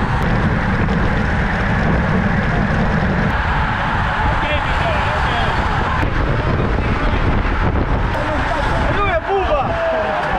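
Wind buffeting a bike-mounted camera's microphone with tyre and road noise, riding at speed in a bunch of racing cyclists. Riders' voices call out in short bursts, more of them near the end.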